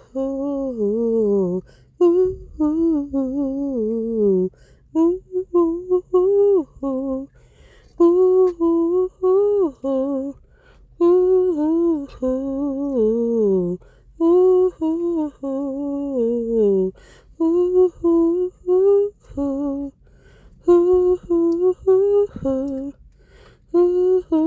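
A woman humming a wordless, made-up tune in short repeating phrases of a few seconds each, with brief pauses between them. Many phrases end in a falling slide.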